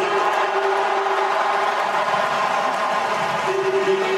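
Stadium crowd noise with music. A long held note sounds at the start and again near the end, over a steady wash of crowd sound.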